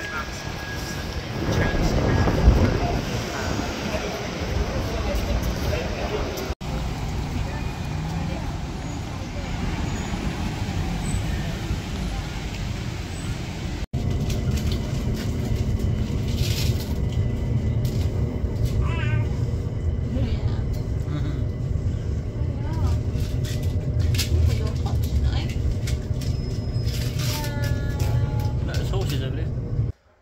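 Passenger train carriage running, a steady low rumble, with other passengers' voices now and then; before it, busy street noise with people talking.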